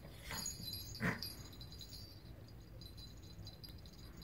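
Poodle snuffling at a plastic treat toy: two short, breathy snorts, the louder one about a second in.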